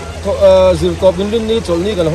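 A man talking in a lively back-and-forth, over a steady low hum.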